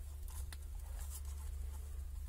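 Faint scratching and light clicks of wires and small parts being handled on a cluttered electronics bench, over a steady low hum.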